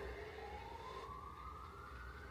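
A faint single tone from a horror video's soundtrack playing on a TV, rising slowly in pitch from about half a second in, over a low steady hum.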